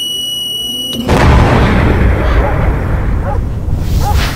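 A high, steady electronic tone for about a second, then a loud explosion sound effect with a deep rumble that slowly dies away under scattered crackles, and a second burst near the end.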